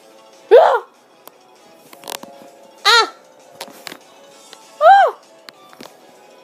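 Three short, pitched vocal exclamations about two seconds apart, the first sliding upward and the others rising and falling, over faint steady background music.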